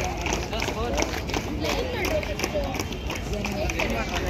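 Babble of many overlapping voices talking and calling at once, with no single speaker standing out, over a steady low rumble.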